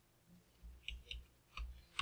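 A few separate computer mouse clicks, four in about a second, with faint low thuds on the desk.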